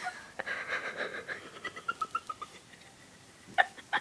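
A girl's breathless laughter: a breathy run of short, high, squeaky notes that fades out, followed near the end by two short, sharp, louder bursts.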